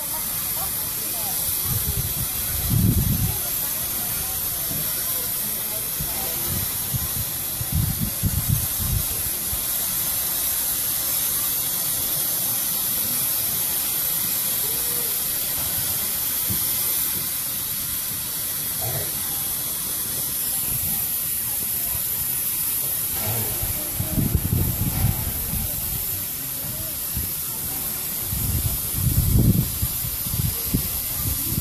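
Steady hiss of steam escaping from the standing narrow-gauge steam locomotive 99 2324-4, with a few short low rumbles over it.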